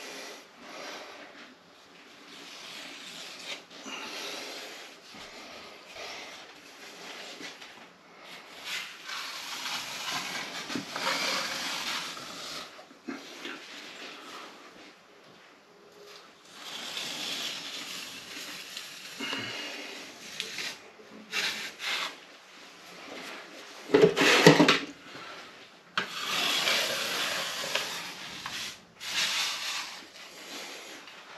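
Metal filling knife scraping and spreading plaster filler along a chased cable channel in a wall, in repeated noisy strokes that come in spells. A single louder knock sounds late on.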